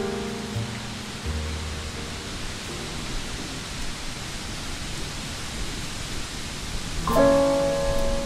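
Steady rain hiss under soft jazz. A few held notes, including a low bass note, fade out in the first three seconds, leaving mostly rain, and a piano chord comes in about seven seconds in.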